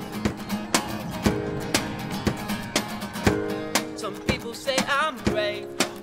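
Acoustic guitar strummed in a steady rhythm, about two strokes a second, over ringing chords. From about four seconds in, a wavering high melodic line joins in.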